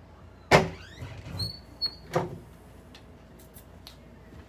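Interior door being opened: a sharp loud click of the handle and latch about half a second in, a brief high squeak, then two more knocks as the door swings open.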